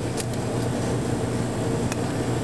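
Steady hum of restaurant kitchen machinery, with a couple of light clicks as fried sweet potato chips are set on a metal tray: one just after the start and one near the end.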